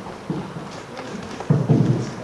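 Microphone being handled and knocked during a mic check: a short rumbling thump early on, then a louder, longer rumbling thump for about the last half second.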